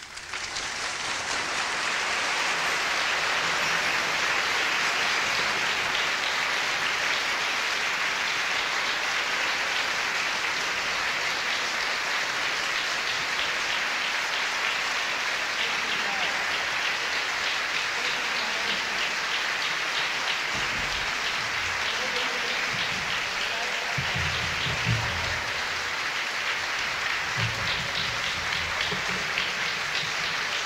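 Audience applause at a live concert, swelling up within the first couple of seconds and holding steady, with a few low rumbles in the last third.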